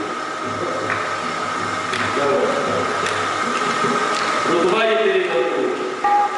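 Qawwali ensemble: a man's voice over a steady harmonium drone, with faint hand claps about once a second.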